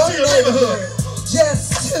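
Gospel rap: a man's voice rapping over a hip-hop backing beat with a steady bass line, played through PA speakers.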